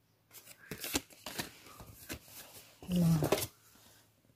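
Paper and card packaging being handled, several short sharp crackles as the cards are shuffled. A brief voice sound about three seconds in.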